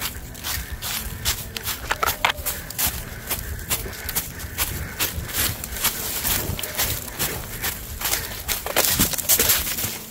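Footsteps running through deep dry leaf litter, a quick, irregular crunching and rustling of leaves underfoot, loudest near the end.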